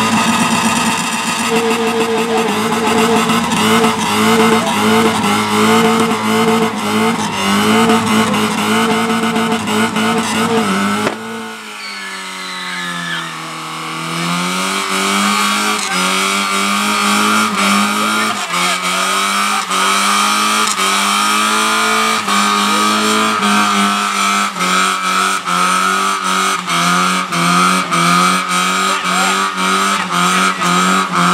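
Small car engine held at high revs during a tyre-smoking burnout, the revs wavering up and down with the spinning tyres. About eleven seconds in the sound drops and the revs sag, then build back up and are held high again.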